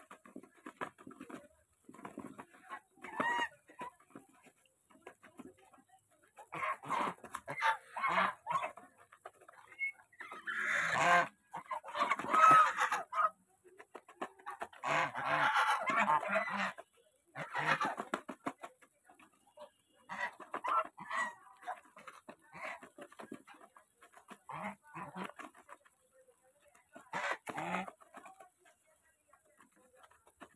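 A flock of domestic geese feeding from a plastic bowl of grain: rapid clattering and nibbling of many bills in the grain, coming in bursts, with occasional short goose calls. It is busiest about a third and a half of the way through.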